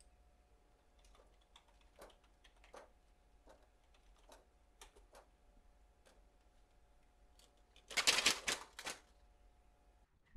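Faint scattered clicks of a rubber-band-powered 3D-printed plastic ornithopter being handled. Near the end comes a rapid clattering rattle of about a second as its crank and wings flap under the rubber band's power.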